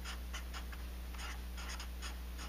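Black Sharpie felt-tip marker writing on paper in a run of short, irregular strokes as a word is lettered, over a steady low hum.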